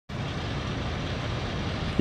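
Steady outdoor background noise, a low even rumble with no distinct events, like distant traffic.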